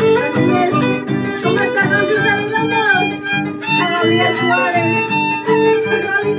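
Andean violin playing a lively shacatan melody, with slides, over an Andean harp's steady plucked bass pulse of about four beats a second.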